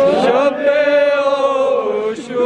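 A man's voice chanting a Kashmiri noha, a mourning lament, into a microphone. The pitch rises in the first half-second and then holds one long steady note.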